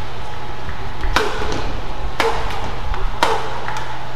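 Badminton rackets striking the shuttlecock three times, about a second apart, each hit a sharp crack with a short ring of the strings.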